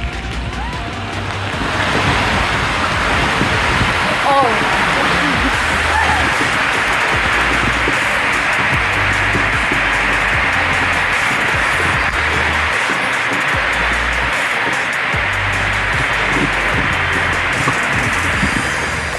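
Steady rushing of water and air during a tube ride down a water slide, swelling about two seconds in and then holding. Background music with a repeating bass line runs under it.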